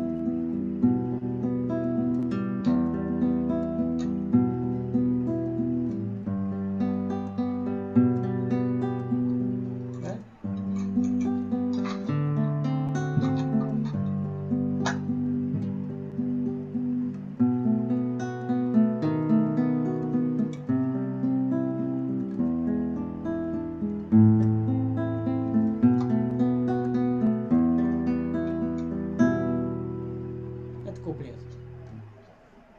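Acoustic guitar played fingerstyle: a steady picked arpeggio pattern (перебор) accompanying a song verse, the chord changing every couple of seconds, with a brief break about ten seconds in.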